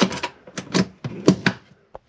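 Hand tools and small hard objects being handled, giving irregular sharp clicks and light knocks, about six in two seconds, dying away just before the end.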